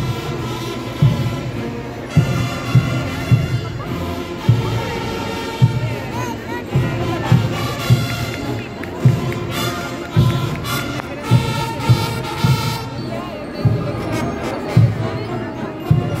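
Brass-and-drum marching band playing a march, a bass drum beating about once a second, with a few extra beats, under the brass melody.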